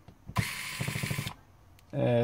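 Small electric screwdriver running for about a second with a fast, rapid ticking whir, backing a screw out of the phone's frame, then stopping suddenly.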